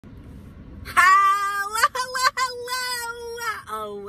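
A woman's voice singing two long, held notes, starting about a second in. Before it there is only a low hum in the car cabin.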